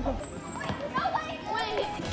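Children playing: scattered short children's calls and voices on an open playground.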